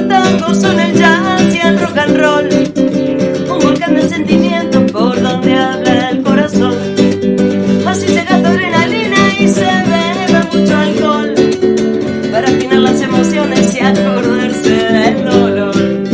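Rumba catalana played on a classical guitar with a driving strummed rhythm, with singing over it.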